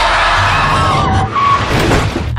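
Loud car tyre skid: a squealing screech with a few wavering high tones over a low rumble.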